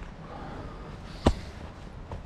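A single sharp knock a little over a second in, over a low rumbling background.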